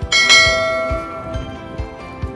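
A notification-bell chime sound effect: one bright bell strike just after the start, ringing and fading over about a second and a half. Background music with a steady beat about twice a second runs under it.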